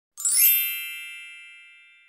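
A single bright metallic ding, an intro sound effect for the title card, struck sharply and ringing away over about two seconds.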